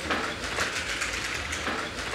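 Steady rushing hiss while passing through an automatic revolving glass door at a terminal entrance.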